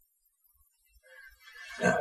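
About a second of near silence (room tone), then a man's voice rising out of it into a drawn-out "Now" near the end.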